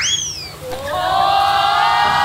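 Comic sound effects added in editing: a quick whistle that sweeps up and falls away, then a held note that slides up and holds steady.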